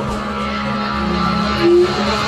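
Live rock band playing in a club: electric guitar and other instruments sounding over a steady held low note.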